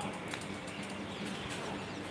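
Quiet room tone with a few faint light ticks from a paintbrush against a steel palette plate as watercolour paint is diluted.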